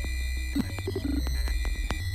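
Improvised minimal electronic music: a deep, steady bass drone under thin high sustained tones, scattered with glitchy clicks and a few short low blips about halfway through.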